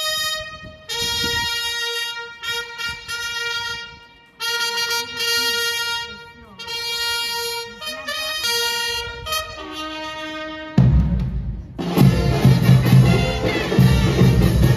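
A solo brass horn plays a slow military call of long held notes with short breaks between them. About eleven seconds in, a louder band with drums starts up.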